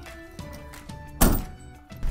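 A van's hinged metal door slammed shut once, a single loud thunk a little over a second in, over quiet background music.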